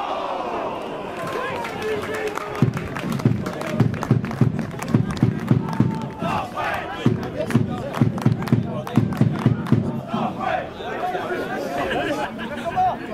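Football spectators shouting and calling out. Sharp hand claps close by, about three a second, start a few seconds in and run for around seven seconds.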